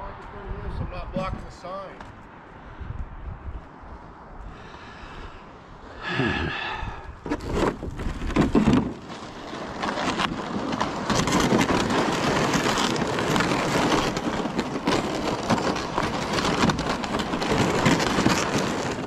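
Crunching and scuffing of people walking over frozen, crusty snow with ice-fishing gear. It is quieter at first and becomes steady and louder from about seven seconds in.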